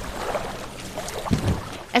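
Outdoor lakeside ambience: a steady rush of wind and water noise, with a brief low rumble about halfway through.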